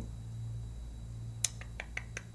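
Steady low electrical hum in a small room, broken about one and a half seconds in by three or four short, sharp clicks.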